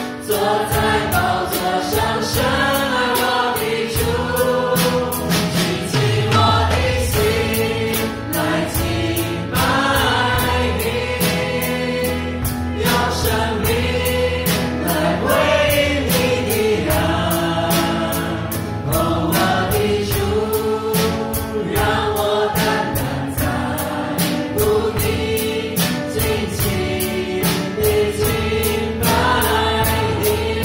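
A live worship band plays a praise song: several voices sing the melody together over electric guitar, keyboard and bass, with drums keeping a steady beat.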